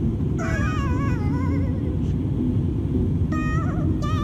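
Steady low rumble of an Airbus A320neo cabin in flight, overlaid with background music whose wavering, vibrato-laden melody comes in about half a second in and again briefly near the end.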